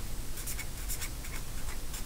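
Marker writing on paper: a quick run of short, irregular scratchy strokes as letters are written.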